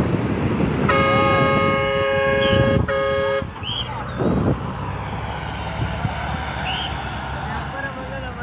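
A vehicle horn sounds in one long blast of about two and a half seconds, with a brief break near its end, over wind on the microphone and men's voices.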